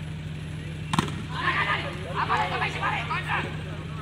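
A volleyball struck hard once, a single sharp slap about a second in, followed by several voices shouting for about two seconds, over a steady low hum.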